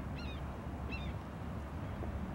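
Two short, high whistled chirps from a distant osprey, about a second apart, over a faint low rumble.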